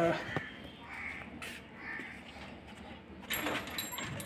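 Two faint bird calls about a second apart, followed near the end by a brief rustle with a light metallic clink.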